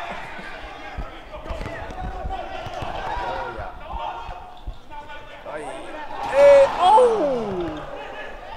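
Players and spectators talking and shouting at a pickup basketball game, with a basketball bouncing on the court in the first half; loud shouts falling in pitch rise up near the end.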